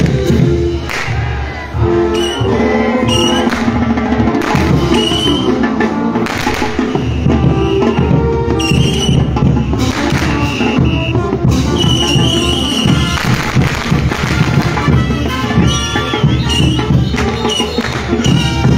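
Live band playing Bolivian folk dance music for a street procession: held horn-like notes over a steady beat of drum and cymbal strokes.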